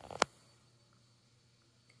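A single sharp click just after the start, then faint room tone.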